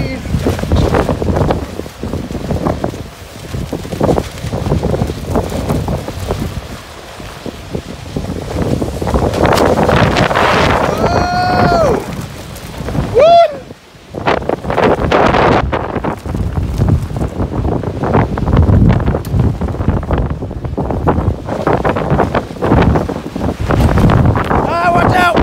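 Strong thunderstorm wind gusts buffeting the microphone in a loud, surging rush that eases for a moment about a quarter of the way in and again just past halfway. A voice calls out twice, briefly and high-pitched, about halfway through.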